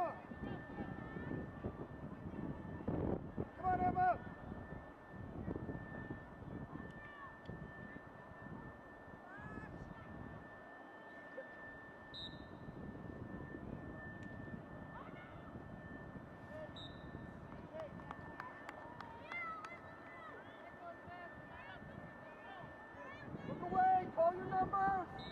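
Distant shouts and calls of players and spectators over outdoor field ambience, louder near the start and again near the end, with a faint steady high-pitched whine running underneath.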